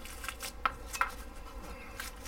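Small knife being drawn out of a fabric knife sheath: faint scraping and rustling with two light clicks about a third of a second apart near the middle.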